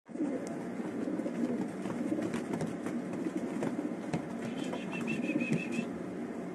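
Racing pigeons cooing in a low, warbling run, with a quick series of short high chirps near the end.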